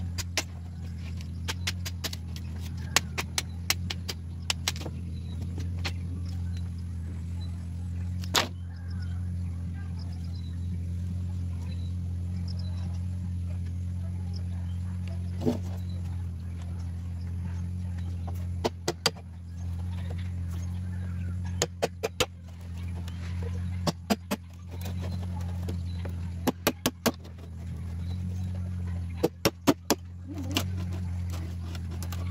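Sharp, irregular knocks of a hatchet striking a bolo-type blade laid on green bamboo poles to split them, sometimes in quick runs of three to five blows. A steady low hum runs underneath.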